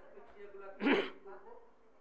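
Faint voices, with one short, loud vocal burst from a person about a second in, a sound like a cough or a clearing of the throat.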